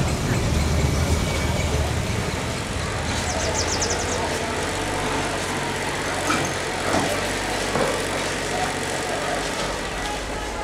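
A bus engine rumbling low, fading over the first couple of seconds into a steady background hum with faint distant voices.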